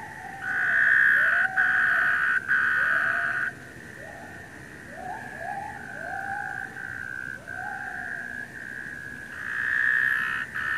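Taipei tree frogs calling: a steady high-pitched call that never stops, with three loud long calls close by in the first few seconds and another near the end. Beneath them, white-handed gibbon calls rise and fall in pitch about once a second.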